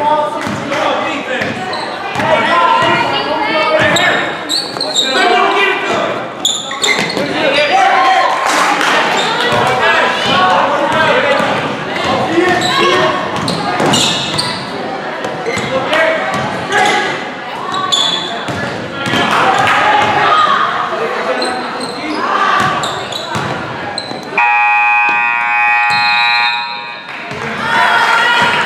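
Gymnasium basketball game sound: spectators' voices and shouts over a basketball dribbling on the hardwood floor. Near the end, the scoreboard horn sounds one steady blast of about two and a half seconds as the clock runs out, ending the period.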